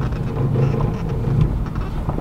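Inside a pickup's cab while driving on a dirt road: a steady low rumble of engine and road noise.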